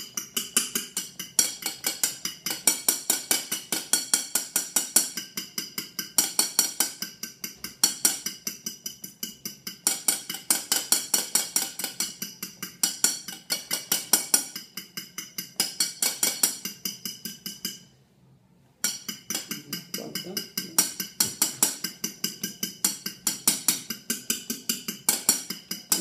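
A fork beating egg whites by hand in a ceramic bowl, striking the bowl in rapid, even clicks several times a second, with a brief pause about eighteen seconds in. The whites are being whipped towards stiff peaks.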